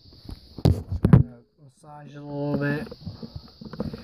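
A few sharp knocks and clatters as the figure and the camera are handled. About two seconds in comes a short stretch of a voice, under a faint steady hiss.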